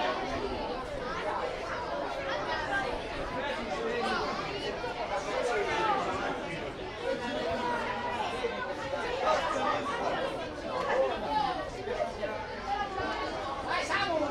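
Chatter of several voices overlapping, none clear, with calls rising above it now and then: spectators and players at a football match.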